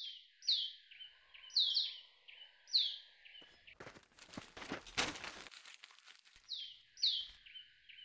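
Small birds chirping, a short falling chirp repeated about once a second, with a run of footsteps in the middle.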